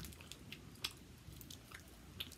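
Faint mouth sounds of a child chewing a soft, chewy Maoam sour stripes candy: scattered soft wet clicks, one a little louder just before the middle.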